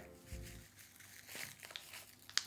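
Faint crinkling of a plastic taco-seasoning packet being shaken out over food, a few light rustles and ticks, with faint music underneath.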